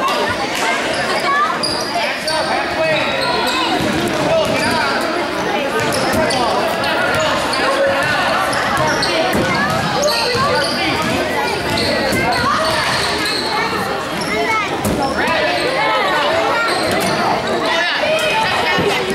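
Spectators' voices and chatter in a reverberant school gymnasium, with a basketball being dribbled on the hardwood court during play.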